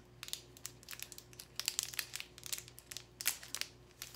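Clear plastic packaging of a makeup brush crinkling and crackling in irregular clicks as it is worked at and pulled open by hand and teeth.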